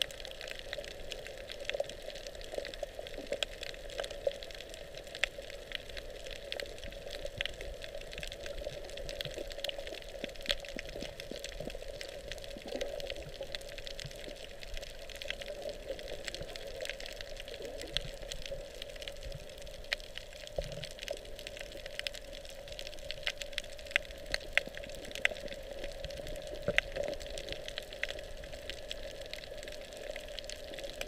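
Underwater sound picked up by a camera while snorkeling over a coral reef: a steady rush of water, scattered throughout with many small clicks and crackles, a few sharper ones near the end.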